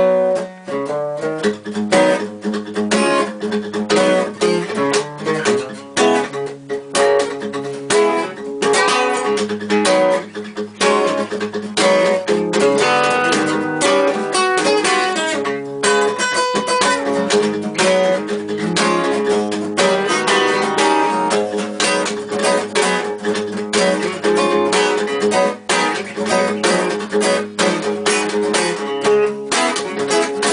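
Two acoustic guitars playing an improvised blues jam together: a steady repeating low accompaniment under changing lead notes.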